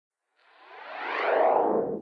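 Synthesized whoosh sound effect for an animated logo intro. It swells out of silence about half a second in, slides downward in pitch as it grows louder, and cuts off abruptly at the end.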